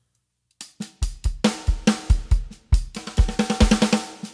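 Native Instruments Studio Drummer sampled drum kit playing back a MIDI pattern, starting about half a second in: kick drum, snare, hi-hat and cymbals, tightening near the end into a fast run of snare hits, the velocity build that has just been raised.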